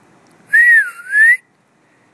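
A person whistling to call a dog: one loud whistled note, a little under a second long, that falls in pitch and then rises.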